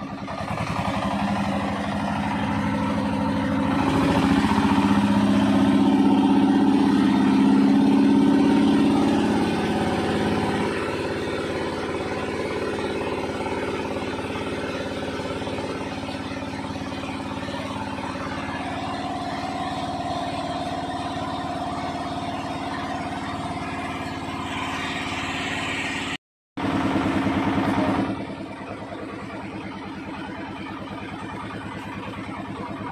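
Small wooden tour boat's motor running steadily under way, growing louder for a few seconds and then settling. Near the end the sound cuts out for a moment and comes back louder for a second or two.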